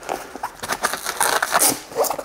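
Hook-and-loop straps being pulled apart and the fabric of a padded soft gun case handled, a run of irregular rasping scrapes.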